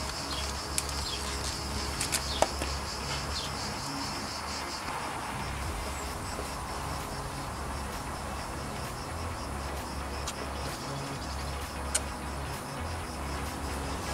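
An insect chirring steadily at a high pitch, weaker after about five seconds, over a low hum, with a few sharp clicks.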